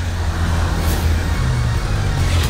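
Car engine running close by as a low, steady rumble, under background music.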